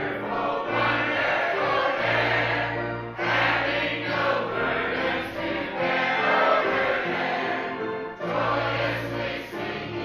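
Mixed choir of men and women singing a hymn together in held, sustained notes, with short breaks between phrases about three and eight seconds in.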